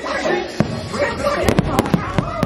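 Fireworks bursting: a sharp bang about half a second in, then a quick run of four or five bangs near the end.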